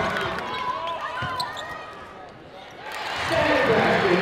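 Live basketball court sound in an arena: sneakers squeaking on the hardwood and a ball thudding, then crowd voices swelling loudly about three seconds in.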